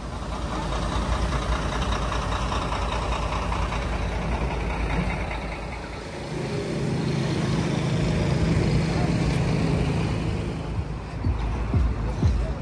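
City street traffic noise: a steady hum of passing vehicles, with a heavier engine drone coming up about halfway through and easing off near the end.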